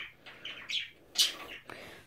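Budgerigar giving a few short, quiet chirps, the sharpest about a second in.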